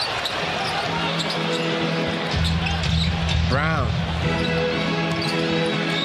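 Basketball arena sound: a steady crowd din with a ball dribbling on the hardwood and short sneaker squeaks. Arena music with a steady low note swells in a little over two seconds in.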